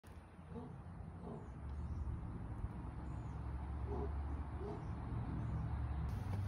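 A few faint, short hooting bird calls, in pairs about a second in and again about four seconds in, over a steady low rumble.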